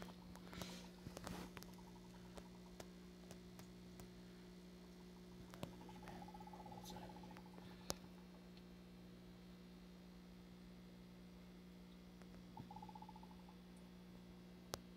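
Near silence: a faint steady electrical hum with a few soft ticks, and twice a brief faint buzz.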